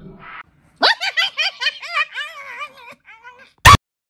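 High-pitched giggling laughter, far above the presenter's own voice, inserted as an edited gag. Near the end it is cut off by a single short, very loud hit.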